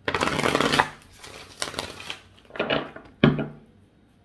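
A deck of tarot cards being shuffled: a dense, loud run of card flicks in the first second, then a few shorter, quieter bursts of card handling.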